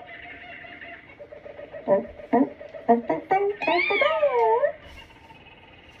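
A voice making animal-like sounds: a few short yelps, then one longer call that wavers up and down.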